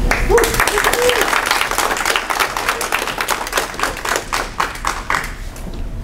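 Audience applause: many hands clapping irregularly, thinning out and stopping about five and a half seconds in.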